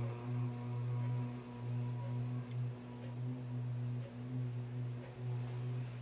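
A low male voice chanting a long, held OM. It hums on one steady pitch with a slight waver throughout.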